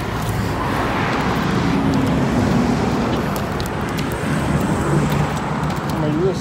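Street traffic: cars passing, the engine and tyre noise swelling about two seconds in and again near the end.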